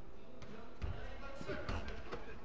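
A football being kicked and bouncing on artificial turf in a large indoor hall: a few dull thuds, the loudest a little under a second in and again around a second and a half in.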